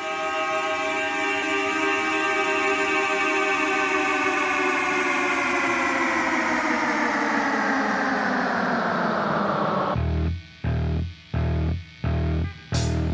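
The song's opening effect: a chord of car horns, slowed down and washed in echo, holds and slowly falls in pitch for about ten seconds. Near the end it cuts off and an electric bass comes in, pulsing on low notes in evenly spaced stabs.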